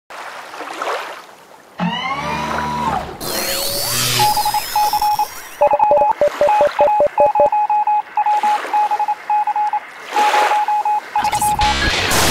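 Electronic title-sequence sound effects. Sweeping whooshes and gliding tones fill the first few seconds. After that comes a long run of short high beeps in quick rhythmic groups, with lower beeps and clicks under them for a couple of seconds and another whoosh near the end.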